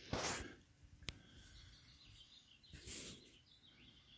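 Faint handling noise from the camera moving over the guitar: a short rustle at the start, a single sharp click about a second in, and another rustle just before three seconds.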